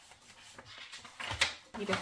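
Paper pages of a handmade junk journal being turned and handled: a soft rustle, then one sharp paper flap about two-thirds of the way through.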